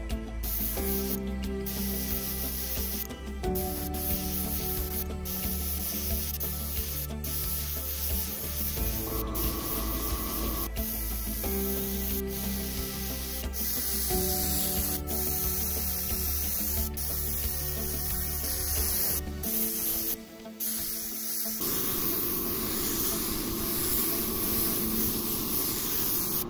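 Instrumental background music with a steady beat and chords changing every couple of seconds, over the hiss of a compressed-air gravity-feed spray gun spraying acrylic paint.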